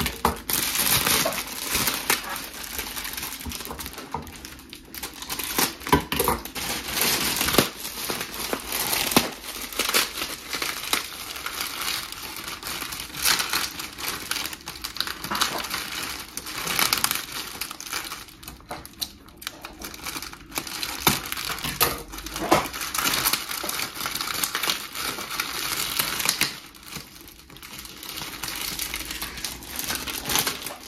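Crinkly foil packaging being handled and pulled open by hand: irregular crackling and rustling that comes in bursts, with a few short lulls.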